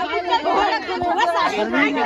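Overlapping chatter of several voices talking at once, with a single short low thump about a second in.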